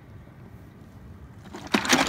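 Low, steady background rumble, then a short, loud noisy burst of rustling or clatter near the end.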